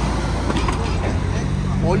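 Highway traffic noise at the roadside: a steady rush and low rumble of passing vehicles, with a steady engine hum coming in near the end.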